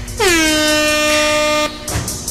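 Air horn blast: one loud note lasting about a second and a half, with its pitch dropping at the onset and then held steady until it cuts off sharply.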